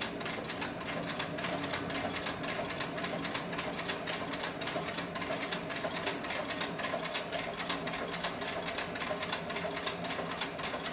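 Cowboy CB4500 heavy-duty harness stitcher, a servo-motor-driven walking-foot leather machine, sewing through two layers of saddle skirting leather. Its needle strokes tick in an even, rapid run, several a second, over a steady motor hum.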